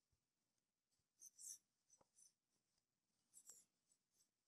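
Near silence broken by faint scratchy rustles of yarn drawn through stitches on a metal crochet hook: two short clusters about two seconds apart, with a small click between them.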